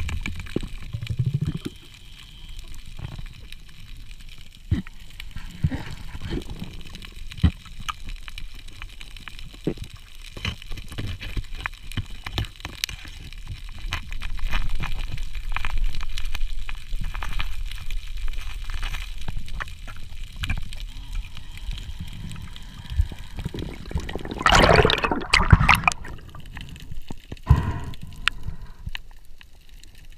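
Underwater sound picked up by a diving camera: muffled water movement with scattered clicks and knocks, and a louder rush of water noise about 25 seconds in.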